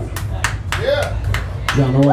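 A handful of scattered hand claps, irregularly spaced, with a brief voice in the middle and a steady low amplifier hum underneath.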